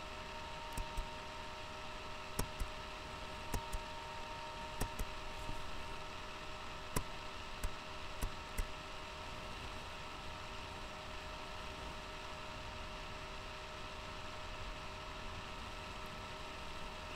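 Room tone through a webcam microphone: a steady hiss with a faint electrical hum, broken by about a dozen short clicks in the first half.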